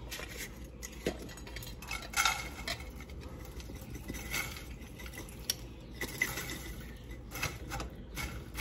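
Dry freeze-dried sloppy joe chunks tumbling out of a glass jar into a nonstick skillet, an uneven rattle of pieces landing in the pan with scattered clicks.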